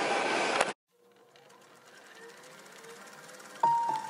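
Background music fading in after an edit cut: a brief stretch of room noise stops abruptly, there is near silence, and then the music slowly rises. A few held melody notes enter near the end.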